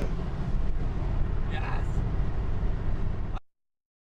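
Steady low road and engine rumble inside a car's cabin at motorway speed, with a brief voice about one and a half seconds in. The sound cuts off suddenly shortly before the end.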